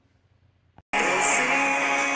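Near silence for about a second, a brief click, then outro music starts and carries on at a steady level.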